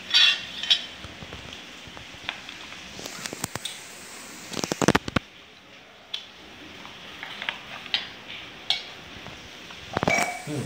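Scattered clicks and light knocks of small electronics being handled on a wooden table: a bare fibre media converter circuit board, its cable plugs and connectors picked up, fitted and set down. A quick run of sharp clicks comes around the middle, the loudest near the halfway point.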